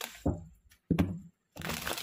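A deck of tarot cards shuffled by hand: a few short crackling riffles about a second apart, then a longer riffle near the end.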